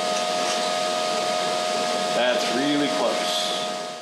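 Steady whir of a motor-driven shop machine running, with a constant whine throughout. A man's voice is heard briefly about two seconds in, and the whole sound fades out at the very end.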